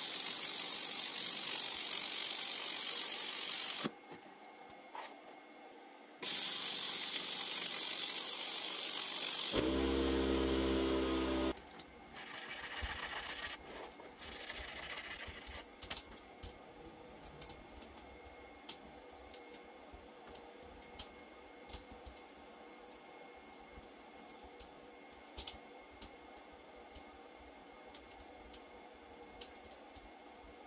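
A 400 W pulsed semiconductor laser welder fires on thin sheet metal, laying continuous weld beads with overlapping pulses. It makes two long steady hisses of about four and three seconds, then a short buzz, then a few fainter hissing bursts.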